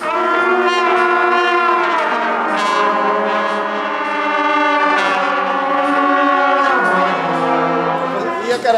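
A group of trumpets playing long held notes together in one unbroken breath, the pitch stepping down to lower notes near the end without any tongued attacks: a downward lip-slur exercise.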